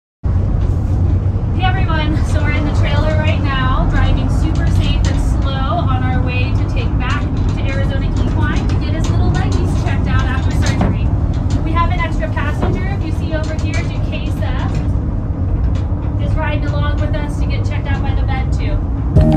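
Indistinct voices talking over a steady low rumble of a running vehicle.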